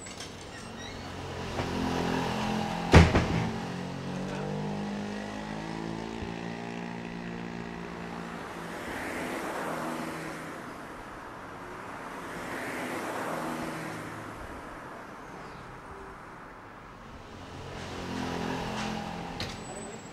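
Cars passing along the street: an engine note slowly falling in pitch as one goes by, then several swells of passing traffic. A single sharp thump about three seconds in is the loudest sound.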